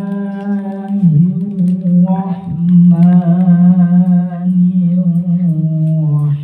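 A man's voice chanting a devotional Islamic recitation through a microphone, held in long, steady melodic notes. The voice breaks briefly about a second in and again midway, and it slides to a lower note near the end.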